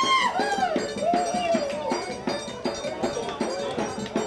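Live accordion and bass drum music with a quick, steady beat. A voice calls out in long rising-and-falling shouts over it in the first two seconds.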